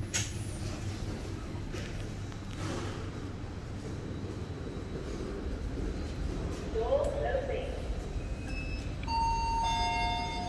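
Toshiba cargo lift at a landing: a steady low hum from the lift, then near the end a two-note electronic chime, one tone followed by a lower one, both held and overlapping.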